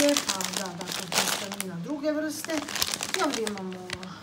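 Plastic food packets crinkling as they are handled and picked up, loudest about a second in, with talking over it.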